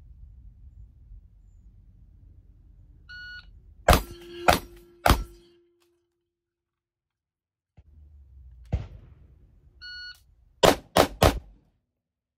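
A shot timer beeps and a shotgun fires three shots about half a second apart, loaded with low-brass birdshot target loads; a steel target rings briefly after the hits. After a break, the timer beeps again and a rifle fires three quicker shots in close succession.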